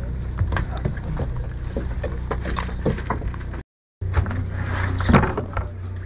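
A boat's engine running with a steady low hum, under scattered clicks and knocks of fishing gear being handled on deck. The sound cuts out completely for a moment about two-thirds through.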